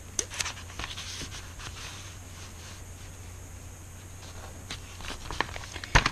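Hands working paper and a roll of tape on a journal page: scattered soft rustles and light taps, busiest in the first second or so and again near the end, with a quieter stretch between.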